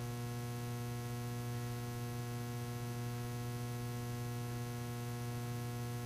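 Steady electrical mains hum: a low, unchanging tone with a stack of higher overtones.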